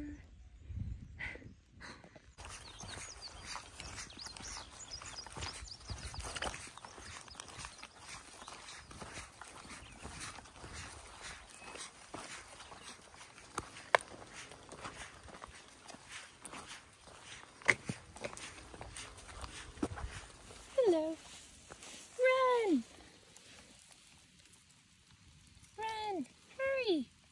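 Footsteps of a hiker walking a damp dirt trail, a run of small ticks and knocks with a couple of sharper clicks. Near the end, a few short, loud vocal sounds from a person, falling in pitch.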